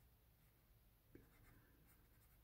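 Faint rubbing of a large felt-tip marker on paper as it inks in, starting about a second in.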